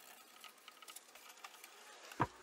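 Near silence: faint rubbing and scattered light ticks from a rag wiping oil onto the wooden edge banding.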